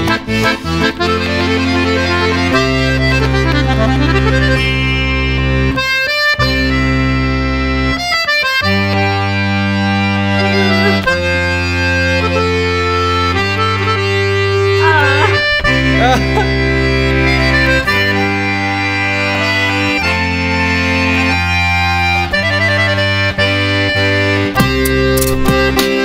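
Bayan (chromatic button accordion) playing a slow, sustained melody over held bass chords, the chords changing every second or two, with brief breaks about six and eight seconds in.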